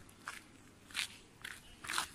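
A few footsteps crunching on dry, stony soil.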